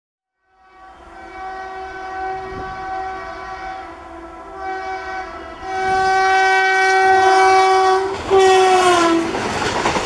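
Electric locomotive horn sounding two long blasts as the train approaches. The second blast is louder and drops in pitch as the locomotive passes, and it gives way to the rush and rattle of the coaches going by.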